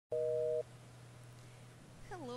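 A short electronic beep of two steady tones sounding together, about half a second long, marking the start of a call recording; a faint low hum follows.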